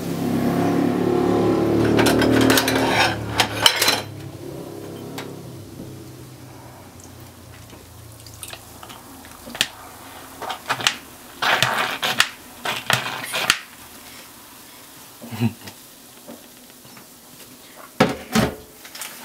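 Half-frozen, slushy cola being worked out of a plastic Coca-Cola Zero bottle into a ceramic dish. There is a loud rush in the first few seconds. Later comes a run of sharp knocks and clatters as the bottle hits the dish, with a couple more knocks near the end.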